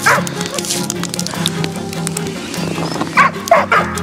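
Yakutian laikas yipping and barking in short calls, once at the start and again a few times near the end, over background music.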